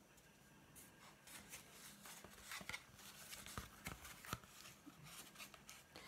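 Faint rustling and light handling noise of a paper plate as wool is threaded through its punched holes, with a few small sharp clicks scattered through the second half.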